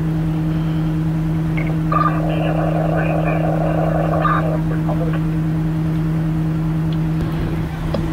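Steady, even drone of a fire truck's diesel engine running at the scene. Indistinct voices come in about two seconds in and fade out around the middle.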